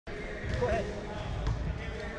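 Basketballs bouncing on a gym floor, a series of dull thuds with a couple of sharper smacks, under background voices.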